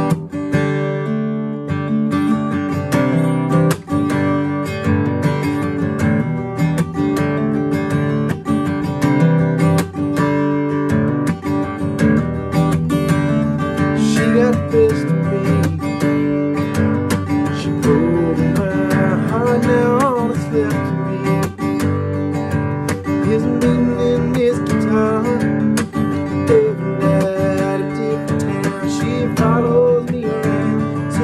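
Taylor acoustic guitar strummed with the fingers, no pick, in a steady pattern. Each chord gets a down strum with a hammer-on, giving two sounds in one strum, then an up strum and a muted stop. It moves through C add9, G, E minor and D, with the two highest strings held at the third fret.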